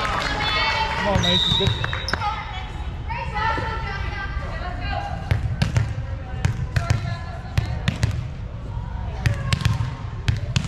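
A volleyball bounced again and again on a hardwood gym floor, sharp bounces about two a second through the second half, over the chatter of players and spectators. A brief high whistle sounds about a second in.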